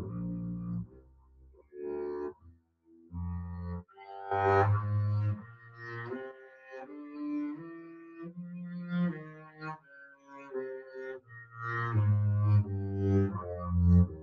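Double bass played with the bow: a melodic minor scale in separate sustained notes, climbing to its top note about halfway through and then coming back down to the low starting register.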